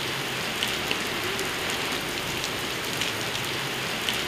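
Steady rain falling on a street and pavement, with individual drops ticking close by.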